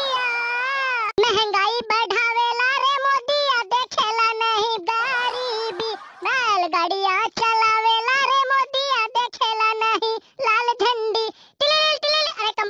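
A pitch-raised, chipmunk-like cartoon voice singing in a run of short phrases with held, wavering notes and brief breaks between them.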